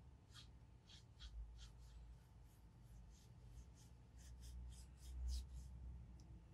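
Cotton swab rubbing fountain pen ink back and forth across a paper card in short, faint strokes, about three a second.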